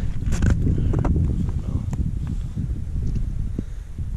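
Wind buffeting the microphone as a steady low rumble, with light rustling and a few short clicks of handling.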